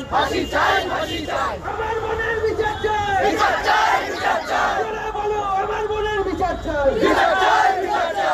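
A crowd of protesters shouting slogans in Bengali together, many voices drawn out in long, loud calls.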